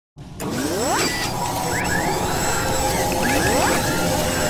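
Mechanical sound effects of an animated robot-machinery intro: whirring and ratcheting over a steady hum, with rising whirs about a second in, again around two seconds, and near the end.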